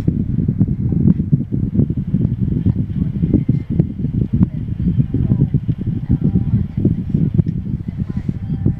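A long draw on a mechanical box-mod vape, with faint crackling throughout, over a loud, steady low rumble inside a car.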